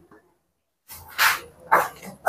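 A dog barking twice, two short barks about half a second apart, after a near-silent second.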